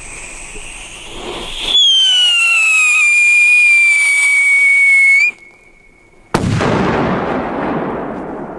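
A ground firework whistling loudly, one piercing tone that falls slightly in pitch over about three and a half seconds and then cuts off. About a second later a firecracker goes off with a sudden loud bang that rumbles away.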